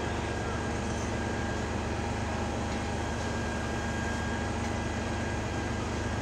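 Steady low engine drone with a faint steady whine above it, the sound of fire apparatus running at the fireground.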